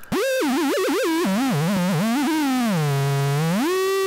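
Homemade noise synth built into a tin can with a metal spring arm, playing a screechy, buzzy drone. Its pitch warbles quickly up and down, sinks low past the middle, then slides back up near the end.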